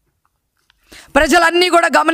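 Near silence for about a second, then a woman speaking into a microphone.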